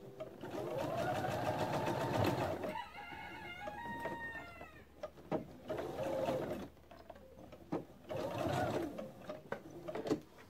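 Pfaff Quilt Expression 4.0 computerised sewing machine stitching in short runs. A longer run starts about half a second in and lasts about two seconds, and two shorter runs follow, with small clicks between them. Between the first and second runs, a separate pitched tone with overtones wavers and falls for about two seconds.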